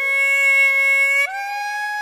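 Hichiriki, a Japanese double-reed bamboo pipe, holding a long reedy note that steps up to a higher held note with a short upward slide a little past halfway.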